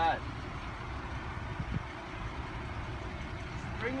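Power soft top of a 2014 Ford Mustang convertible folding down, with a steady low mechanical hum, and a soft thump a little under two seconds in.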